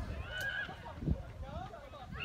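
Distant high-pitched shouts and calls from women's voices on a rugby pitch: a few short, rising-and-falling cries over a low rumble of field noise.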